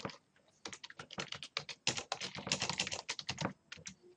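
Typing on a computer keyboard: a quick, uneven run of keystrokes that begins about half a second in and stops just before the end.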